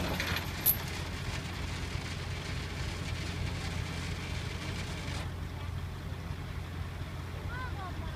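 Heavy diesel engine running steadily with a low drone, from the crane recovery truck lifting the tipper, with a faint hiss above it that stops about five seconds in.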